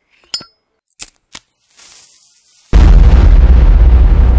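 Sound effects for an animated logo: three short, sharp clinks in the first second and a half, a faint hiss, then about two-thirds of the way in a sudden loud, deep boom that holds on.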